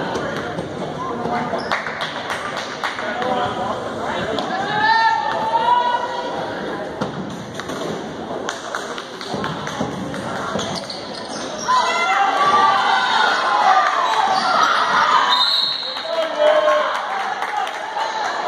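Spectators' voices in a gymnasium with a basketball bouncing on the hardwood floor during free throws; the crowd gets louder, shouting and cheering, about twelve seconds in.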